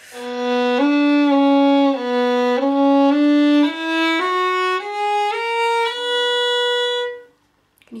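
Solo violin bowing a short scale passage, first rocking between two neighbouring notes and then climbing step by step to a held note that stops about 7 s in. It is played with flat, fleshy left-hand fingers, which the player says gives a very unfocused sound.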